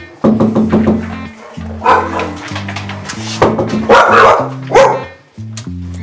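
Dogs barking in several loud bursts over background music.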